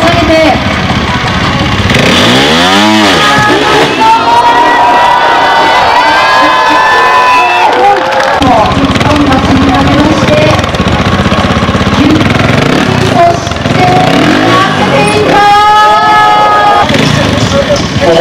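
A trials motorcycle engine revving as the bike is ridden over obstacles, under talking and crowd noise.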